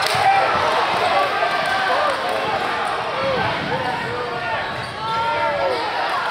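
Live basketball game sound on a hardwood court: basketball dribbles and many short, high sneaker squeaks as players cut and drive, over steady crowd chatter in a large gym.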